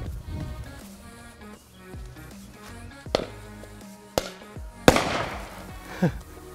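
A rod of sodium metal reacting violently with water in a plastic bucket: several sharp explosive bangs between about three and five seconds in. The last bang is the loudest and trails off over about a second, over steady background music.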